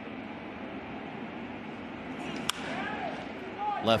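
A wooden baseball bat hitting a pitched ball: one sharp crack about two and a half seconds in, over steady low background noise.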